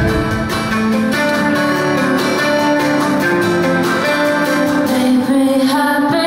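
Live pop-rock band playing with a strummed acoustic guitar and electric guitars, with a woman singing lead.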